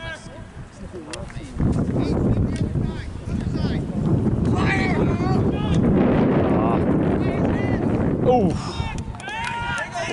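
Wind buffeting the microphone in a low, gusting rumble, with distant shouting voices from the lacrosse field about halfway through and again near the end.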